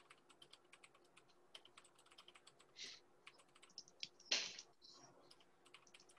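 Faint typing: a run of light, irregular key clicks, with two brief soft hisses, the louder one about four and a half seconds in.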